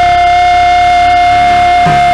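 Live gospel worship music: one high note held dead steady over the band, with faint low hits near the end.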